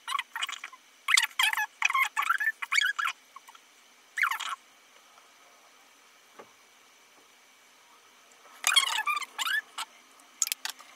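A makeup sponge dabbing liquid foundation onto skin, giving quick squeaky squishes in irregular runs: a fast series at first, one more a little later, then after a lull another short run near the end.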